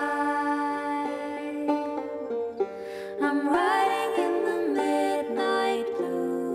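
Two women singing a slow melody in harmony over picked acoustic guitar and banjo, with long reverberation from a church room.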